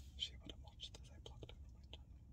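Faint whispering with small mouth clicks, over a low steady hum in a quiet car cabin.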